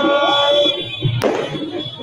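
Crowd noise from a street rally, with a steady pitched tone through the first half and a single sharp bang about a second in, typical of a firecracker.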